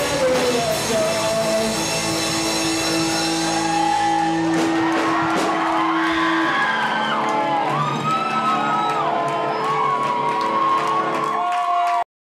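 Live rock band's last chord ringing out with a long held guitar note while the crowd cheers, shouts and whoops. The held low note stops about six seconds in and the whooping and yelling carry on over the fading instruments.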